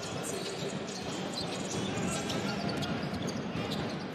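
Live basketball game sound in an arena: a ball bouncing on the hardwood court over a steady crowd murmur.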